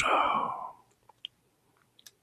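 A man's soft, breathy exhale trailing off right after speaking, then quiet with one faint click about halfway through.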